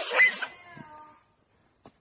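A short, high-pitched meow-like squeal right at the start, rising in pitch and fading within half a second.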